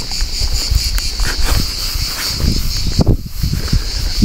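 Steady, high insect chirring like crickets, which dips briefly about three seconds in, over irregular low thumps and rustling from a handheld camera being moved about while walking.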